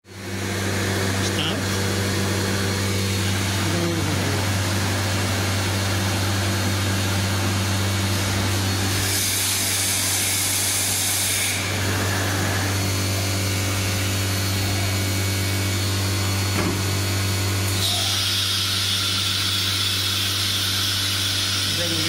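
COSMEC FOX 22 S CNC machining centre running: a steady low machine hum with a constant noise over it. A higher hiss comes in for about two seconds around nine seconds in, and again from about eighteen seconds.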